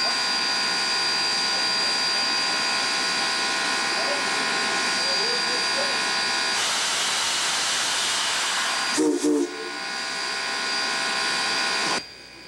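A standing 2-8-2 steam locomotive hissing steam steadily. About halfway through the hiss grows rougher and fuller, and about three-quarters through the steam whistle gives two short toots.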